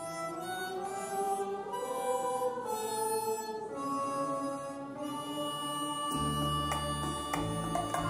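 Harmonica playing the melody of a Schlager song over a backing track, with a bass line coming in about six seconds in.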